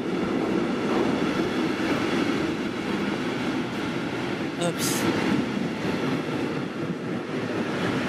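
Freight train of container wagons running through the station: a steady rumble of wheels on rail, with a short hiss about five seconds in.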